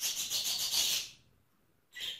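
Rustling of a bunch of fresh mint leaves being moved about: a dry, papery rubbing for about the first second, which then stops short.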